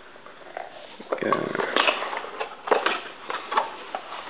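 Plastic shrink wrap being torn off a cardboard trading-card box, crinkling and crackling in irregular bursts from about a second in.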